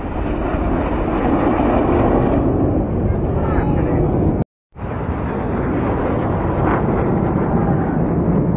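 Loud jet noise from the Red Arrows' BAE Hawk T1 jets flying past, a steady rush heavy in the low end, with voices from the crowd. It drops out for a moment about four and a half seconds in, then carries on.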